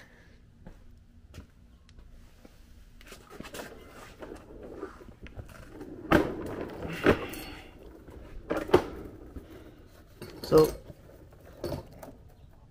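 Handling noises as a person lies down on a plastic mechanic's creeper and slides under a truck on concrete: rustling from about three seconds in, then several sharp knocks and clatters over the next few seconds and again near the end.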